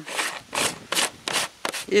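Plastic screw lid of a backpack sprayer being twisted shut by hand: about five short rubbing strokes of plastic on plastic, one every half second or so.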